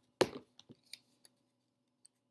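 A plastic glue bottle set down on a tabletop with one sharp knock, followed by a few faint clicks and taps as a construction-paper strip is handled.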